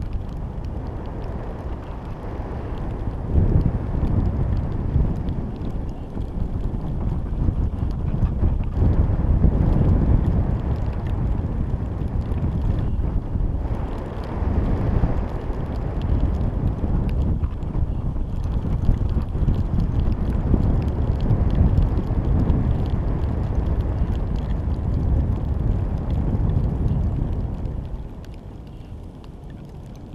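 Wind buffeting the microphone of a GoPro camera riding a high-altitude balloon payload in flight: a low, gusting rumble that swells and eases, dropping away near the end.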